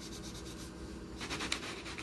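A blue wax crayon scribbling back and forth on paper in quick strokes, coloring in an area. It is faint, with the strokes growing clearer about halfway through.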